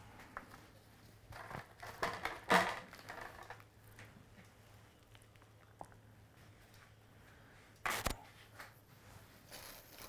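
Quiet handling sounds at a kitchen worktop as doughnuts are set into a paper-lined wooden box: soft rustling between about one and three seconds in, then a single sharp knock near eight seconds, over a low steady hum.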